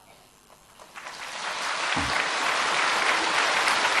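Large audience applauding: after about a second of near quiet the clapping starts, builds over a second and holds at a steady level.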